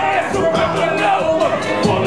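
Live hip hop: a rapper delivering lyrics into a handheld microphone over a loud beat with a steady hi-hat, amplified through a club sound system.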